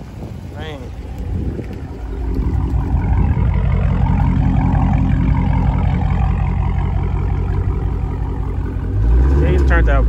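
Dodge Charger Scat Pack's 392 Hemi V8 running, its low exhaust rumble coming up about two seconds in and holding steady, then swelling louder near the end.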